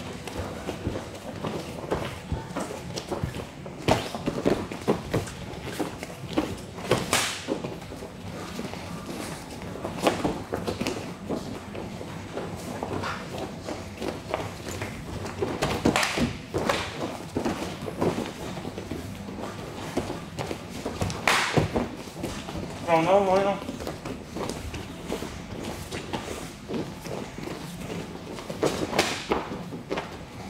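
Kicks and gloved punches landing in a sparring bout: a series of sharp slaps and thuds at irregular intervals, several of them loud, over the scuff of bare feet on the cage mat. Voices call out in the background, with one wavering drawn-out call a little past two-thirds of the way through.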